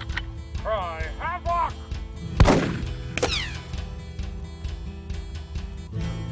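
A rifle shot about two seconds in, with a ringing tail, followed under a second later by a second crack and a falling whine of a bullet ricochet, over background music.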